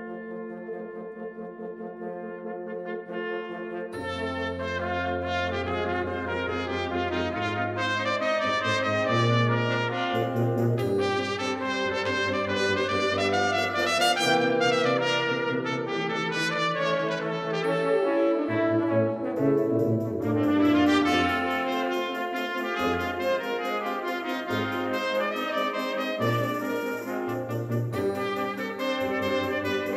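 Small brass ensemble of trumpets, French horn, trombone and tuba playing a concert band piece. It opens with the upper parts alone, the low brass comes in about four seconds in, and the music grows fuller and louder.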